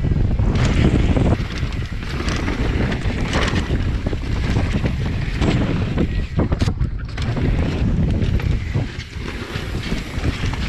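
Wind rumbling on a GoPro action camera's microphone as a mountain bike rolls fast down dirt singletrack, with tyre noise on the dirt and frequent knocks and rattles from the bike over bumps.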